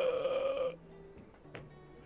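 A loud, steady held tone with overtones for about three-quarters of a second. Then, over faint background music, a single sharp click of pool balls about a second and a half in.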